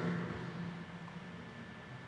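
A pause between sentences: faint, steady room tone with a low hum. The last word's reverberation fades out over the first second.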